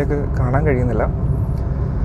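Steady low rumble of engine and road noise from a Hyundai Grand i10 Nios, 1.2-litre petrol, on the move, heard from inside the cabin. A man talks over it for the first second.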